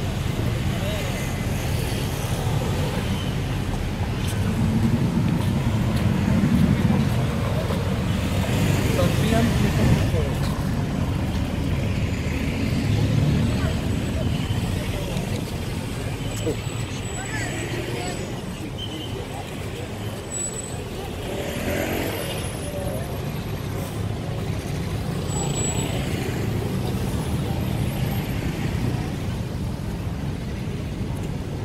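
Steady road traffic with a low rumble, swelling and easing as cars go past.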